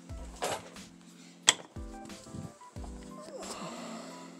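A single sharp click about a second and a half in, a wall light switch flipped off, among soft low thumps of someone moving about. Background music plays throughout.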